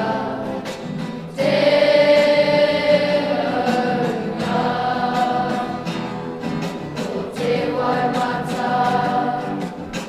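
A choir of intermediate-school children singing their school pepeha set to music as a waiata, holding long sung notes. A new, louder phrase comes in about a second and a half in.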